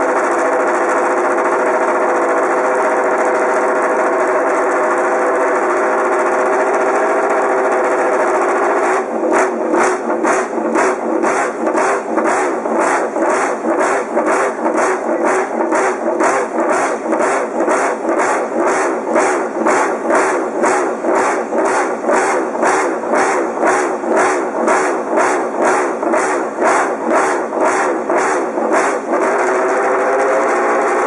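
Repsol Honda MotoGP bike's V4 racing engine running steadily at raised revs, then blipped on the throttle over and over, about two to three short revs a second, for some twenty seconds before it settles back to a steady run near the end.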